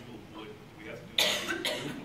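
A person coughing: a sharp, loud cough a little over a second in, then a second, softer cough about half a second later, over faint talk.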